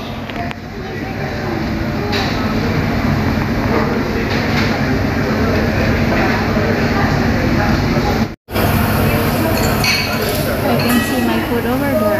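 Restaurant dining-room ambience: diners' background chatter with clinks of dishes and cutlery over a steady low rumble. The sound cuts out briefly about eight seconds in.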